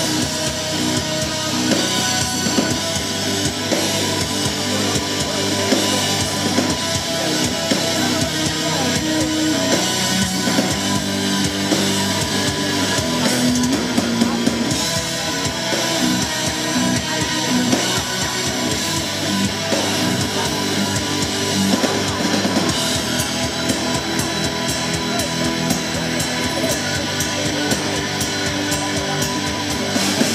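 Live progressive metal band playing through a festival PA, with electric guitars, bass, keyboards and drum kit, recorded from the crowd.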